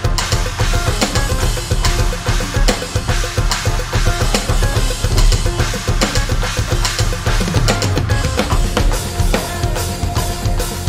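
Electronic drum kit played fast along with the band's backing track: rapid bass drum, snare and cymbal hits over steady recorded music.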